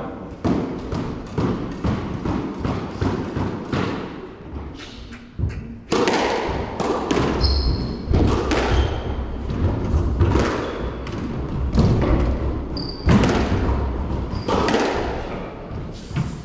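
Squash rally: the ball cracking off racquets and thudding against the walls of a glass-backed court, with short high squeaks of shoes on the wooden floor. The hits are softer and sparser at first, then become a faster, louder exchange from about six seconds in.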